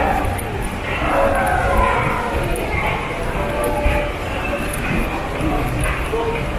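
Indistinct chatter of shoppers' voices in a shopping mall, no single voice clear, over a steady low rumble.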